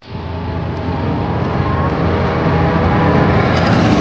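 Car engine sound effect for a logo intro, starting abruptly and running with a steady pitch while it grows steadily louder.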